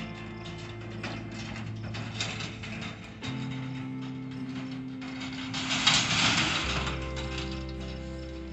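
A pickup towing a stock horse trailer drives off across a dirt yard, the trailer rattling and clanking, loudest about six seconds in. Background music of held chords plays under it, changing twice.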